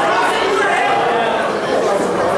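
Ringside crowd chatter: many voices talking and calling out over one another, with cornermen and spectators shouting toward the fighters, in a large echoing room.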